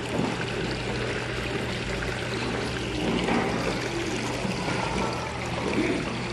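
Water fountain splashing and trickling steadily, with a constant low hum underneath.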